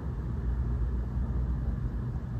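Steady low rumble of room background noise with a faint low hum, and no other event.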